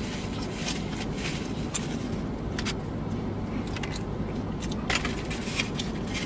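Steady low hum inside a vehicle's cabin, with scattered small clicks and crackles from chewing and from handling food in paper wrappers and foam takeout containers.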